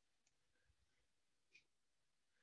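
Near silence: room tone, with two very faint ticks.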